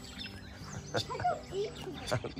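Small birds chirping in short high calls, with one sharp click about halfway through.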